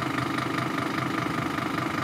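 Scania P310 horsebox lorry's diesel engine idling steadily.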